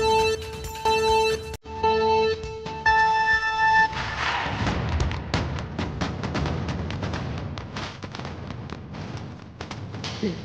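Countdown timer beeps: three short beeps and a fourth, longer one to start the race. Then rapid crackling of candy-bar wrappers being torn open and crumpled.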